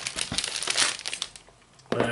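Clear plastic packaging crinkling and rustling as it is torn open and pulled away from a trading-card binder, the crackling thinning out about a second and a half in.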